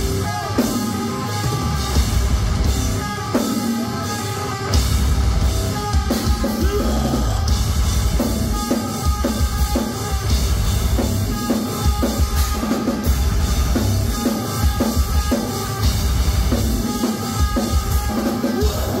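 Live metalcore band playing loud, distorted guitars and bass over a drum kit with heavy, uneven bass-drum hits.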